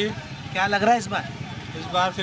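A man talking in short phrases over a steady low hum of street traffic.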